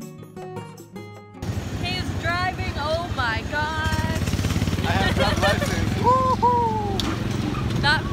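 Background music for the first second and a half, then a sudden cut to the small gasoline engine of a theme-park race car ride running steadily, heard from the seat, with voices over it.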